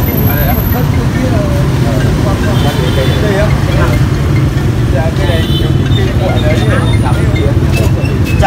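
Several people talking in the background over a steady low rumble. No one voice stands out.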